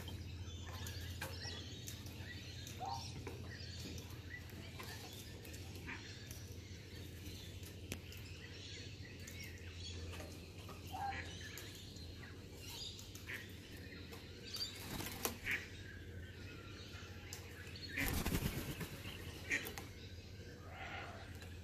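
Laughing kookaburra's wings flapping as it takes off from a deck railing near the end, the loudest sound, over a low background with scattered faint bird chirps and small taps.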